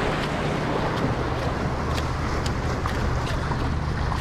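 Wind on the microphone over surf against jetty rocks, with a steady low engine drone underneath and a few light, sharp taps scattered through.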